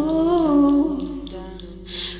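Wordless humming of a tune: one phrase starts at once, slides up a little and is held for about a second, then dies away through the second half.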